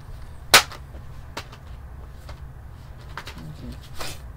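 A sharp click about half a second in, then three or four fainter clicks spread through the rest, over a steady low hum.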